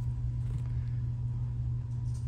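Steady low background hum with nothing else clearly standing out: the room's constant drone.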